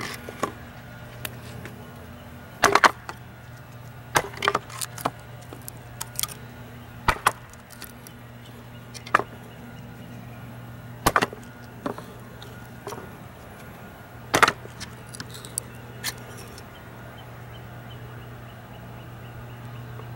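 The tip of a D2 steel fixed-blade knife being stabbed and pried into a block of wood to test its strength, giving about a dozen sharp cracks and knocks of wood splitting at irregular intervals. A steady low hum runs underneath.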